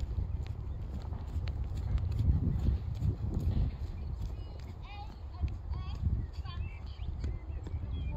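Hoofbeats of a Shire horse moving under a rider, over a steady low rumble. A few short high-pitched calls come in about midway.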